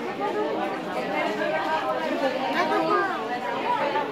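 Several people talking at once: overlapping chatter of a small gathering in a room.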